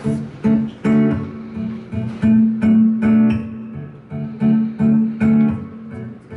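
Acoustic guitar strummed in a steady rhythm of chords, about two to three strokes a second, playing a song's instrumental intro.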